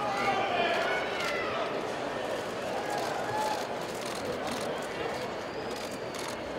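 Indistinct chatter of several people talking in the background, with a few faint clicks.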